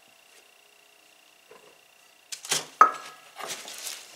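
A quiet stretch with a faint steady hum, then, a little past halfway, a quick run of knocks and clinks as a metal measuring cup is tipped and tapped against a glass mixing bowl to empty its flour. The loudest strike rings briefly.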